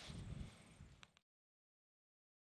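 Near silence: faint outdoor background hiss for about a second, then cuts to complete silence.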